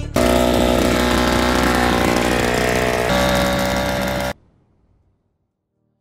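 Ryobi garden blower running steadily after its repair, its pitch stepping slightly about three seconds in. It cuts off abruptly after about four seconds.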